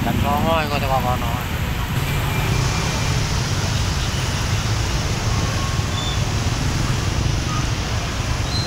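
Motorbike and car engines in a slow traffic jam: a steady low rumble. A brief wavering voice is heard near the start.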